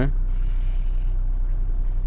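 Chevrolet S10's four-cylinder 8-valve flex engine idling, a steady low hum heard from inside the cab.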